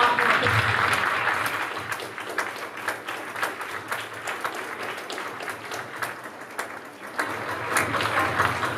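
Audience applause in a large hall, a dense patter of many people clapping, loudest at first and gradually dying down.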